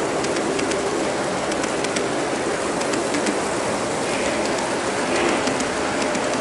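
G scale model freight cars rolling past on garden railway track: a steady rolling rush with many small, irregular clicks from the wheels on the rails.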